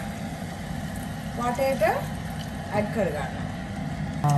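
Water poured from a glass into a pot of simmering chicken curry, heard as a steady wash of noise. A couple of brief vocal sounds come through in the middle.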